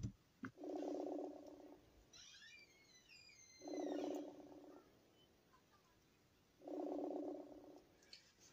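Phone ringing faintly: a buzzing tone about a second long sounds three times, three seconds apart, with faint high falling chirps between the first two.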